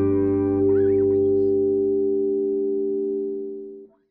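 Final chord on a Klein-style electric guitar ringing out through a pedal chain with chorus and reverb, slowly fading, then cut off abruptly near the end.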